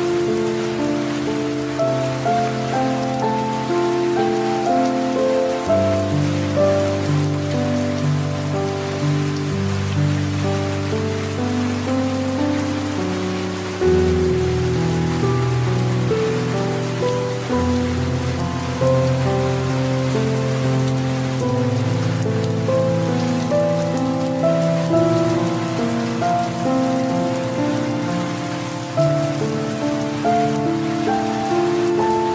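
Steady rain falling, with slow, soft background music beneath it: sustained chords with a deep bass note that shift every few seconds.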